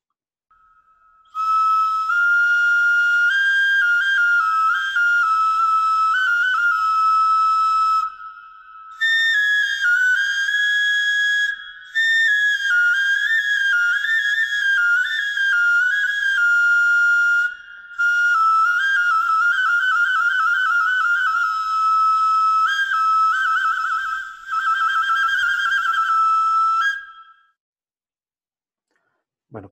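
A pre-Hispanic Chupícuaro ceramic duct flute, incomplete, played in a recording. It gives a clear, whistle-like tone in several melodic phrases of stepwise notes, with fast trills in the later phrases and short breaks between phrases.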